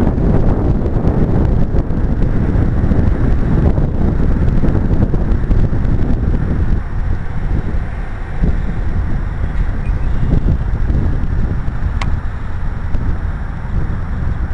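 Wind buffeting the camera's microphone: a loud, uneven low rumble, with one small click about twelve seconds in.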